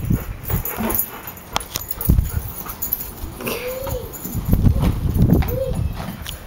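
Yellow Labrador retriever whining twice, short rising-and-falling whines about halfway through and near the end, over low rumbling noise.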